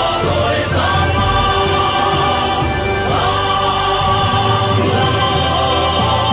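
Male vocal quartet singing a Vietnamese patriotic song in harmony, holding long notes, over an instrumental backing track with a steady bass pulse.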